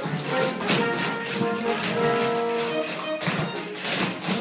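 Live theatre orchestra playing an up-tempo show tune, with the clicks of many tap shoes striking the stage in quick runs over the music.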